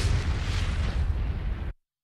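Sound effect of a firework bursting: a loud, rumbling blast with a crackly hiss on top, easing slightly and then cutting off suddenly near the end.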